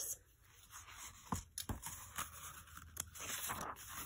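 Pages and cover of an old children's picture book being handled and turned: faint paper rustling with a few short crackles and soft taps.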